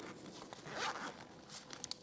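Zipper on a soft fabric carrying case being pulled open, a faint rasping run with a few small clicks near the end.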